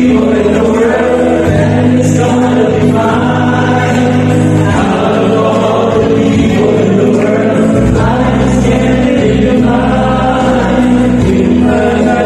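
A group of men singing together into microphones over a musical backing, with steady bass notes changing every couple of seconds, heard through a hall's loudspeakers.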